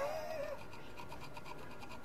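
Faint, rapid scratching and small clicks of a flat-blade screwdriver working against the folded-over metal lip of a classic VW Beetle speedometer bezel as it is pried off.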